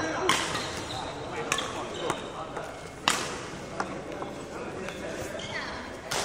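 Badminton play on a wooden indoor court: a series of sharp knocks about a second apart, echoing in the large hall.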